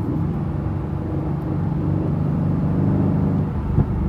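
Twin-turbo V8 of a 2019 Aston Martin Vantage heard from inside the cabin while cruising, its drone growing stronger as the car goes into Track mode and the revs rise. One short crack comes near the end.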